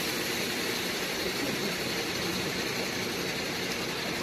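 An engine running steadily under a broad hiss, with no strokes or changes.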